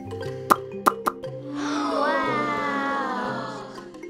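Bouncy cartoon background music. Three short pops sound in the first second or so, followed by a long cartoon creature call that slides slowly down in pitch and fades near the end.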